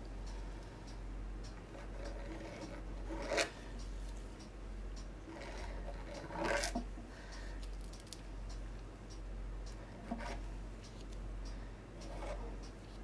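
A thin wooden stick scratching lightly across a painted canvas, three short scrapes a few seconds apart, over a steady low hum.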